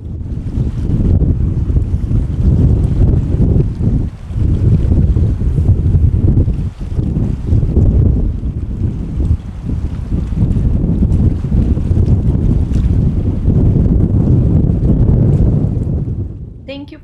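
Strong gale-force wind buffeting the microphone, a loud, gusting rumble with brief lulls about four and seven seconds in, over choppy water.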